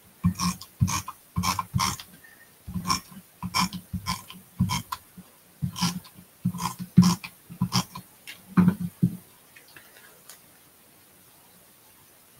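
Handheld tape runner laying adhesive on cardstock in a quick run of short strokes, each a brief rasp, stopping about nine seconds in.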